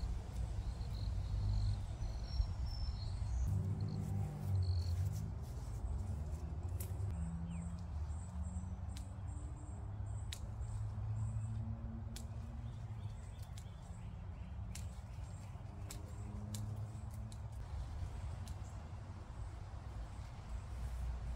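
Scissors snipping potato stems now and then, with leaves rustling, over a steady low rumble. Birds chirp in the background, mostly in the first half.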